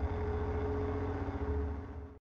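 Closing seconds of an electronic track made on a Polyend Tracker: a steady low bass drone with a slight pulse and a single held tone above it, slowly fading.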